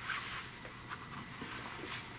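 Handling noise close to the microphone: a short rustling scrape at the start and another near the end, with a few faint clicks between.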